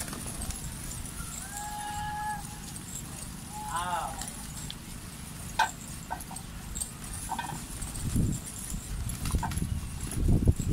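A large flock of domestic pigeons on a rooftop flapping and fluttering, with scattered sharp wing claps and a heavier burst of wingbeats near the end as birds take off close by. Distant voices call out briefly, a short held tone early on and a quick rising-and-falling call a few seconds in.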